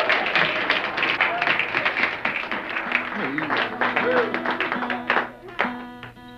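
Audience clapping and laughing, thinning out after about three seconds as guitar notes start to ring and a couple of sharp strums come in near the end.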